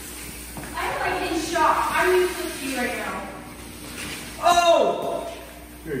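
People's voices: indistinct talk, then a loud exclamation that falls in pitch about four and a half seconds in.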